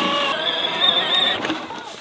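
Case IH kids' electric ride-on tractor pulling away in first gear with a loaded hay trailer, its motor and gearbox giving a steady whine. The whine dies away in the last half second.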